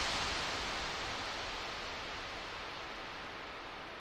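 A steady, even hiss with no tune or beat, slowly fading out after the music has stopped.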